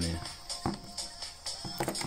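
Small plastic buttons on an Airpage pager clicking as they are pressed, twice, about a second apart, with a faint steady tone under them.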